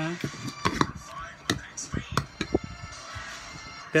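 Eating with a spoon from a bowl: a dozen or so short, irregular clicks and taps.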